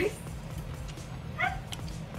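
A small dog gives a single short, high-pitched yip about one and a half seconds in, over a low steady room hum.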